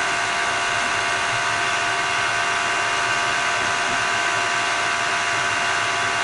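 Steady whirring rush with a constant high whine inside a car's cabin, typical of the heater blower fan running on its low setting with the engine on. The low setting is the only one that works; the owner has been told the blower motor resistor has failed.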